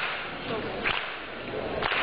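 Finger snaps keeping a slow beat, about one a second, over the steady noise of a crowd in a hall.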